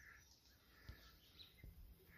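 Near silence, with a faint bird call at the very start and a few soft thuds spaced through the quiet.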